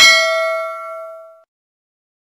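Notification-bell 'ding' sound effect from a subscribe-button animation: one bell-like strike that rings and fades away within about a second and a half.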